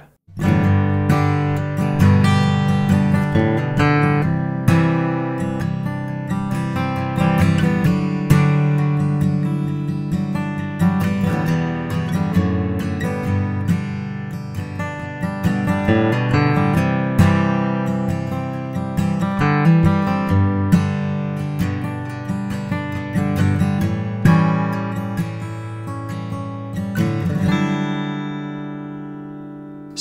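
Martin acoustic guitar playing a short passage built around the Dadd9add11 chord (an open C shape moved up two frets), with the dissonant semitone between F sharp and G in the voicing. The last chord rings out and fades over the final few seconds.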